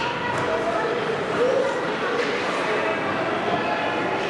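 Spectators' voices and calls during youth ice hockey play, with one voice calling out louder about a second and a half in. Short sharp scrapes and clacks of skates and sticks on the ice are heard a few times.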